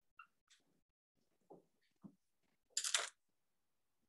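A dry-erase marker squeaking and scratching on a whiteboard in a few short strokes as formulas are written, the loudest stroke about three seconds in.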